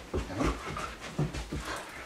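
A dog panting in quick irregular breaths while tugging on a rope toy, with a few soft thumps.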